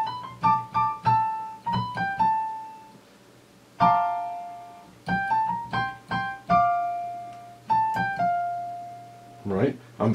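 A single-note melody played on a Janko-layout Lippens keyboard with a piano tone. The notes are struck one at a time and left to ring and fade, in two short phrases with a pause of about a second between them.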